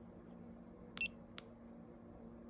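Electric scooter dashboard powering on: a click from its button about a second in with a short, high beep, then a second light click, over a faint steady hum.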